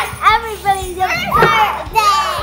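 Several children yelling and shrieking in loud, high-pitched shouts, one after another, with no words to make out.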